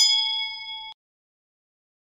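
Notification-bell sound effect: a single bright ding that rings for just under a second and cuts off suddenly.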